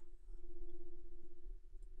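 Low steady electrical hum with a faint constant tone, the background noise of a desk recording setup, with a few faint computer mouse clicks.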